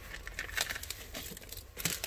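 Protective plastic film being peeled off a new brushed-metal cargo scuff plate, crinkling and crackling irregularly, with the loudest crackles about half a second in and near the end.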